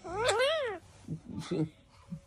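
Blue Indian ringneck parakeet giving one meow-like call that rises and then falls, a cat's meow mimicked by the bird, followed by a few short soft sounds.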